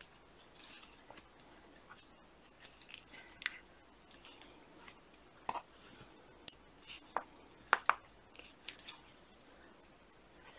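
Faint, irregular clicks of metal circular knitting needle tips tapping together as stitches of knit-purl ribbing are worked.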